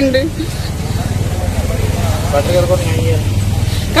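A low, steady engine rumble, as of a motor vehicle running close by, with faint voices in the background.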